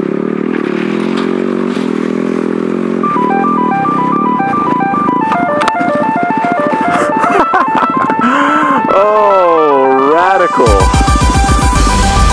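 Yamaha WR250R single-cylinder dirt bike engine running at low speed over rough ground. About three seconds in, a plinking melody of short electronic notes joins it. Near the end a wobbling pitch sweep leads into loud electronic music with a heavy bass beat.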